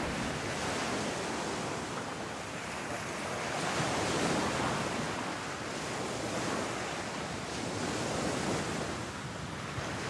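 Ocean surf washing, a steady rushing hiss that swells and ebbs gently every couple of seconds.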